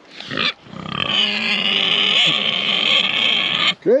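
Idaho Pasture Pig sow squealing in one long, loud, high call of nearly three seconds, after a brief shorter call at the start: a sow protesting in a squabble over food.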